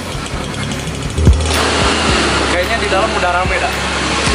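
A small motorcycle engine starts about a second in and then runs at a steady idle, with voices over it.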